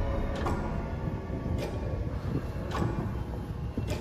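Grandfather clock chime striking about once a second, four strikes, each with a short ring, as the ringing of an earlier chime fades out. Wind rumbles low on the microphone underneath.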